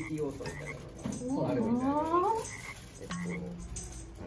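A person's voice drawn out into one long sound that rises in pitch, lasting over a second, starting about a second in.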